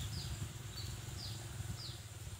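A bird calling in short, high chirps that fall in pitch, about four in two seconds, over a steady low rumble.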